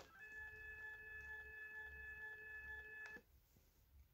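Covetrus TRI-IPV21 infusion pump giving a steady high tone for about three seconds while its manual purge button is held down, with a click of the button at the start and another as it stops.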